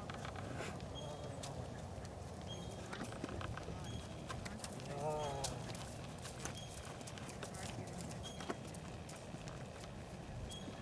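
Hoofbeats of a horse cantering on sand arena footing, in an ongoing rhythm of soft footfalls.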